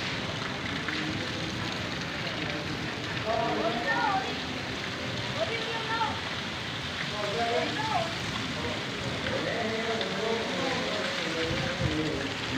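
Steady rain falling on the ground, an even hiss that runs on without a break. Faint voices come through now and then.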